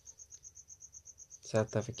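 A cricket chirping: a faint, high, pulsing note repeating about ten times a second, steady throughout.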